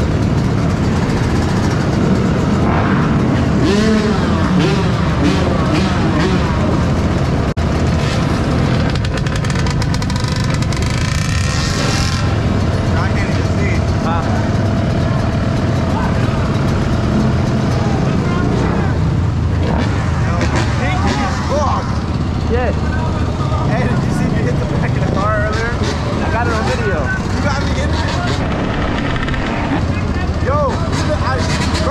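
Dirt bike engines idling in a steady low drone, with indistinct voices over it now and then.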